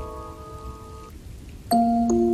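Music-box notes ringing on and fading, stopping about a second in, over a steady rain sound. After a short gap with only the rain, a new music-box tune starts near the end.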